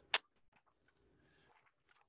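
One short sharp click just after the start, then near silence: faint room tone.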